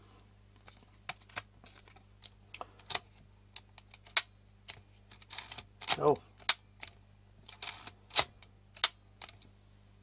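Scattered sharp clicks and light handling noises from an Olympus 35 RD rangefinder camera being worked by hand, with a short rasping stretch about three-quarters of the way through.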